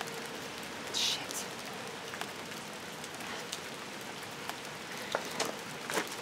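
Steady hiss of outdoor background noise, rain-like, with a short brighter rustle about a second in and a few faint ticks.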